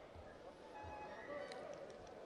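Quiet pause between speech: faint background noise of the room, with a few faint distant tones in the middle.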